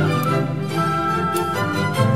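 Symphony orchestra playing classical music, with bowed strings to the fore.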